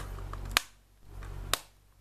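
Three sharp plastic clicks from a Blu-ray case being handled, about half a second and then a second apart. Between them are brief gaps of near silence.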